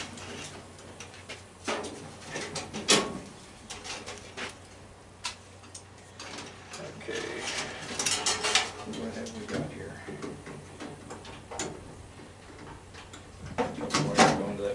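Wire cutters snipping and clicking on wires inside a furnace's sheet-metal cabinet, with scattered sharp clicks and knocks of tools and metal being handled.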